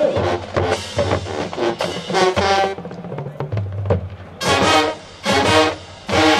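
Marching band playing on the field: loud brass chords over drums, dropping to a quieter stretch of low held notes and drum strokes about halfway through, then loud brass chords again.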